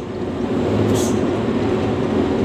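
Hino 500 truck's diesel engine running, with road and cab noise heard from inside the cab while driving on a dirt road. A brief hiss comes about a second in.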